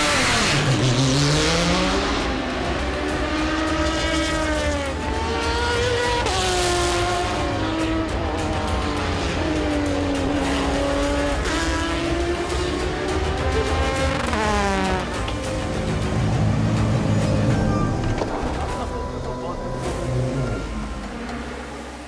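Porsche 911 RSR GTE race car's flat-six engine revving, its note rising and falling again and again through acceleration and gear changes.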